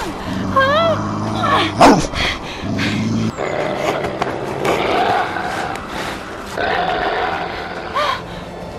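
Staged werewolf growling and roaring over low background music, with a loud swooping sound about two seconds in.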